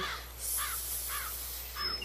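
A bird calling: a few short calls that rise and fall in pitch, about half a second apart, over a faint hiss.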